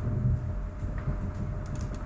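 A few light computer mouse clicks near the end, over a steady low hum of room noise.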